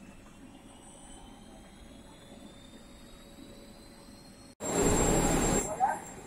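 A yarn doubling machine starting up: a low steady hum with a faint whine that climbs slowly in pitch as the spindles run up to speed. About four and a half seconds in, a loud rush of noise breaks in for about a second.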